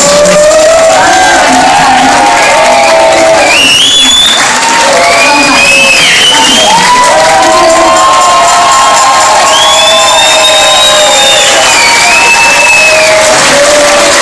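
A large audience cheering and whooping loudly and without a break, with high shouts rising above the crowd and music underneath.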